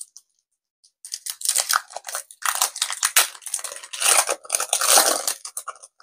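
Foil wrapper of a Pokémon TCG booster pack being torn open and crinkled by hand: a dense, uneven crackling that starts about a second in and goes on until just before the end.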